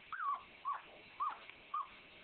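Two-day-old Doberman pinscher puppies squeaking: four short high squeaks, each rising then falling, about half a second apart.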